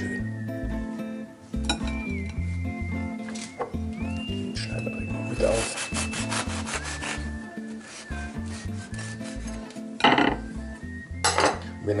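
A knife sawing through a crusty bread roll in back-and-forth strokes, in two bouts: one about midway through and a louder one near the end.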